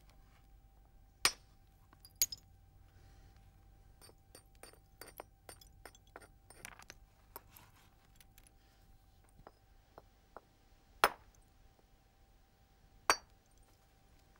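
A round hammerstone striking a flint nodule: four sharp, hard clinks, one about a second in, another a second later and two near the end, with a run of lighter taps in between, as flakes are struck from the flint's edge.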